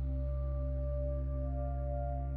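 Ambient background music: a steady low drone with held, bell-like tones above it, a new higher tone coming in about one and a half seconds in.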